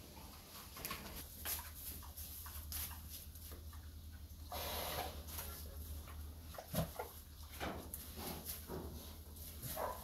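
Mangalița pigs grunting and snuffling as they root and eat in straw and feed, with irregular crackles and rustles of straw and a few short pitched grunts near the end.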